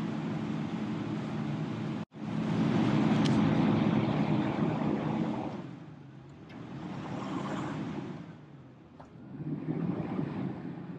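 Caterpillar 535 skidder's diesel engine running as the machine drives along a dirt trail, its sound swelling and easing off several times. The sound cuts out for an instant about two seconds in, then comes back louder.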